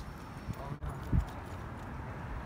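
A few soft, dull low thumps over steady outdoor background noise, the clearest a little over a second in.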